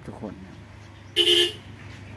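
A brief, loud toot with a steady pitch, lasting under half a second, a little past one second in.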